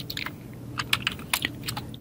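Computer keyboard keys clicking in a short run of irregular keystrokes, typing and deleting a layer name.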